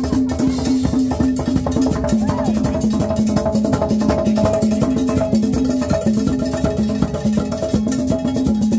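Live dance band music with busy, evenly driving percussion and drums over a steady repeating bass line.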